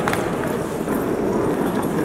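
A wheeled suitcase rolling over a hard stone floor with a steady rumble, mixed with the clack of boot footsteps.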